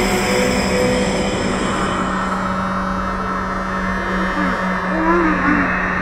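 Algorithmic electroacoustic music made in SuperCollider: a dense, noisy texture over a steady low drone. Its bright upper hiss fades after about two seconds, and warbling tones that glide up and down come in from about four and a half seconds.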